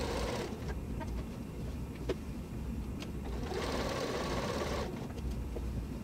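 Domestic sewing machine with a walking foot quilting through a layered pillow top (top, batting and backing). It runs briefly, goes quiet for about three seconds apart from a few light clicks, then runs again for just over a second.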